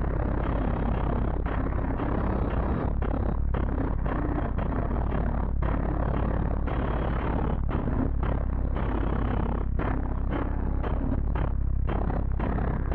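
Loud, bass-heavy electronic music played through a car audio system with two Sundown ZV5 12-inch subwoofers on a Sundown 7500 amplifier, heard inside the cabin. The deep bass is steady and is the loudest part.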